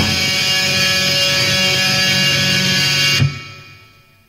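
Industrial noise-rock recording ending on a held, distorted electric guitar chord that rings steadily, then cuts off sharply a little after three seconds in and dies away.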